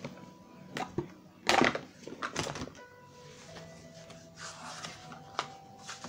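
Soft background music of held notes, with a few short knocks and rustles over it; the loudest rustle comes about a second and a half in.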